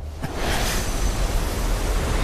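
Sound effect of a surge of green magical flame: a short click about a quarter second in, then a loud, steady rushing noise over a low rumble.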